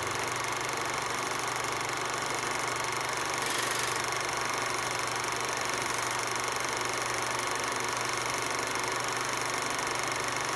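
Film projector running, used as a sound effect over the old-film footage: a steady mechanical whir and rattle with a low hum.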